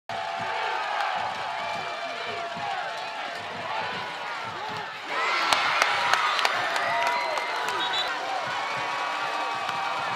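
Stadium crowd at a high school football game: many voices calling and shouting together, swelling into louder cheering about halfway through, with a few sharp knocks or claps just after the swell.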